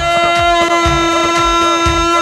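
Yarghoul (Palestinian double reed pipe) holding one long steady note over a steady drum beat: dabke dance music.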